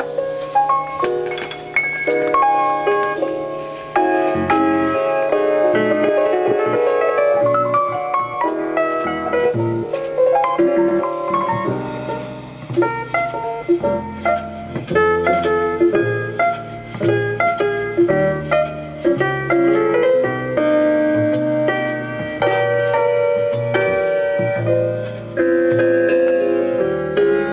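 Keyboard music playing back from a cassette on a Marantz PMD-221 portable cassette recorder, a mono machine, as a test of its playback.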